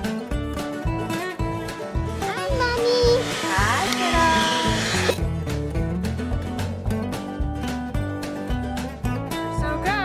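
Acoustic country-style background music with plucked strings and a steady beat. A voice comes in over it for a few seconds, about two seconds in.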